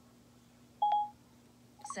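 iPad VoiceOver sound cue: a single short electronic beep with a click at its start, about a second in, as the Settings app opens.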